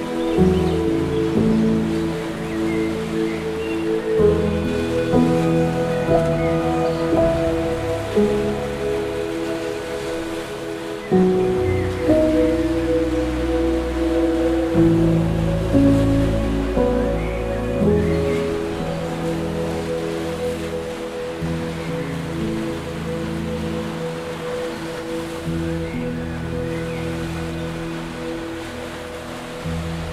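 Slow, gentle instrumental music with held chords and a soft bass line, over a faint wash of water waves.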